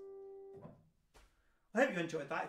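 Final chord of a song accompaniment on a grand piano, held steady for about half a second and then cut off as the keys are released. A short breath and a faint click follow, and a man starts speaking near the end.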